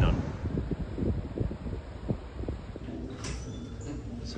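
Faint footsteps, about two to three a second, over quiet indoor room tone while walking through a ship's interior passage, with a brief rustle of the phone being handled near the end.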